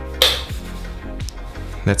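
A wall light switch flicked once, a single sharp click, as the room light is turned off, over steady background music.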